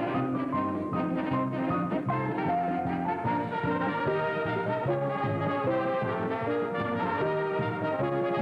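Brass-led band music, trombone and trumpet carrying a melody of held notes over a steady beat, playing without a break.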